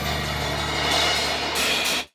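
The final ending hit of a salsa percussion arrangement ringing out: a cymbal wash over a held low note, which cuts off abruptly at the very end.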